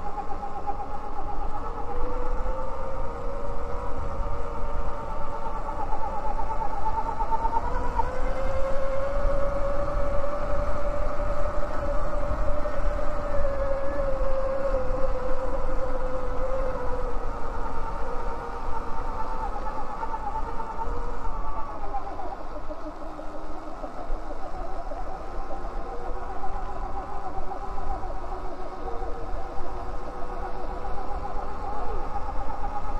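Electric bike motor whining under way, its pitch rising and falling with speed and strongest through the middle, over a steady rumble of wind and tyres on a gravel dirt trail.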